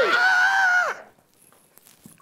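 A woman's high-pitched, drawn-out shout, held on one note for about a second and dropping away at the end.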